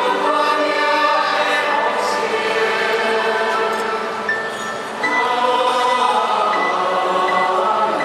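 A choir singing long held chords; one phrase fades about four seconds in and the next begins about a second later.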